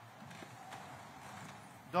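Congregation getting to its feet in a large, echoing stone church: faint shuffling, footsteps and scattered light knocks over a low murmur.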